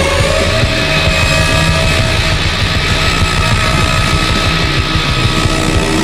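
Distorted rock music played from a 45 rpm vinyl single on a DJ's turntable, with a sustained note held throughout over a dense, loud backing.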